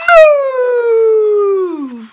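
A child's voice imitating a cow: one long drawn-out "moooo" that falls steadily in pitch.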